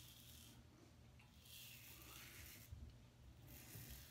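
Faint scratchy strokes of an Above The Tie M1 safety razor cutting two days' stubble through lather, three strokes of about a second each.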